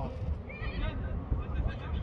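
Shouts and calls from players on the pitch, short high-pitched voices rising and falling, over a steady low rumble of wind on the microphone.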